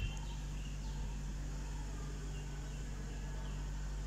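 Quiet, steady low hum of room or background noise, with a few faint, short high chirps around the middle.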